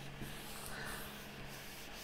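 Faint rubbing of hands smoothing the pages of an open paper notebook flat.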